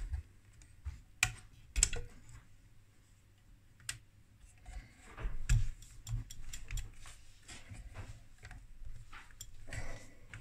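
Hands working wires and connectors inside an open metal instrument chassis: irregular clicks, taps and rustling, with the sharpest clicks a little under two seconds in and again about five and a half seconds in.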